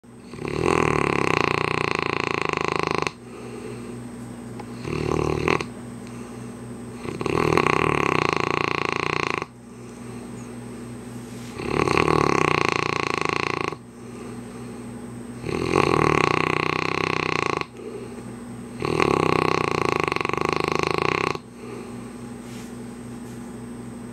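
A sleeping mastiff snoring: five long, loud snores of about two seconds each, coming roughly every four seconds, with a shorter, softer snore about five seconds in.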